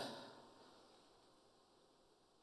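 Near silence: faint room tone, with the echo of the preceding speech dying away in the first half second.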